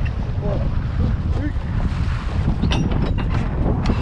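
Wind buffeting the microphone over a steady low rumble of the boat on open water, with faint voices. About three seconds in come a few sharp knocks as the gaffed yellowfin tuna is hauled over the gunwale onto the deck.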